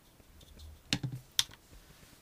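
Three light, sharp clicks from a small plastic pot of colour paste and a fine paintbrush being handled, about a second in, as the brush is dipped and the pot is put down on the board.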